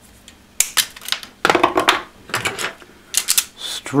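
Small side cutters snipping through red insulated hookup-wire leads, then the clicks and clatter of hand tools being handled as automatic wire strippers are picked up: a string of short, sharp clicks and snips with brief pauses.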